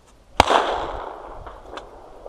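A single shotgun shot about half a second in, loud and sharp, its report rolling away over about a second. A faint click follows near the end.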